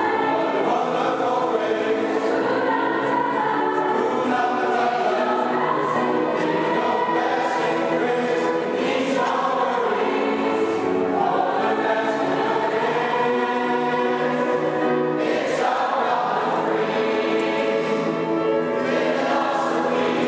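Mixed choir of men's and women's voices singing in parts, unbroken and at a steady level, with the ring of a large stone church.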